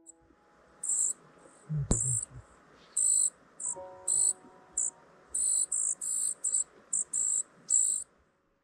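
Outdoor ambience of insects chirring in short, irregular high-pitched bursts, about a dozen of them. A single sharp knock with a low thud comes about two seconds in.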